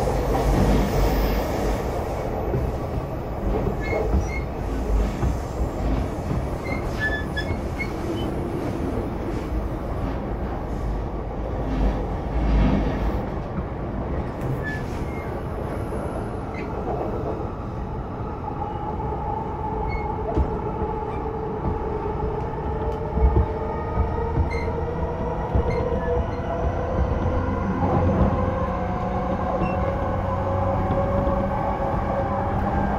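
Running sound inside a JR East E233-0 series electric train with Mitsubishi IGBT inverter drive: steady wheel-and-rail noise with scattered clicks over rail joints. From about halfway a motor whine rises slowly in pitch as the train picks up speed.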